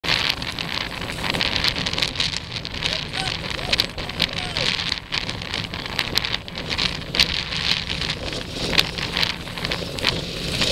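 Wind buffeting the microphone: a steady rushing rumble with many sharp crackles and pops.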